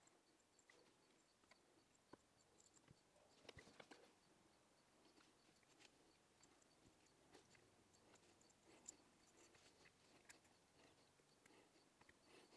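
Near silence, with a few faint ticks from fine resistance wire being wound by hand around a coil-winding jig.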